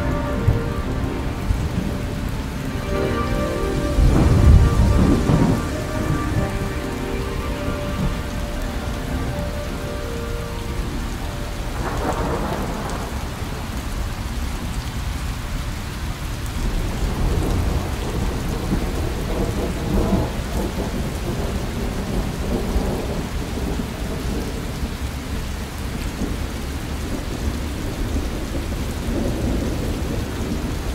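Steady rain with rolling thunder, a weather recording within an ambient electronic lounge track. Held music tones fade out about ten seconds in, leaving rain and several rumbles of thunder, the loudest about four seconds in.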